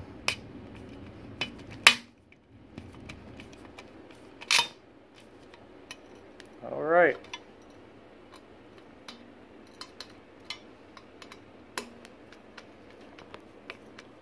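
Hand screwdriver driving screws into a steel standing-desk leg frame, giving irregular sharp metallic clicks. One short tone rises and falls about seven seconds in. The screws are binding and the heads are not yet seated.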